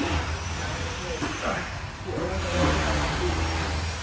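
Faint talking over a steady low rumble.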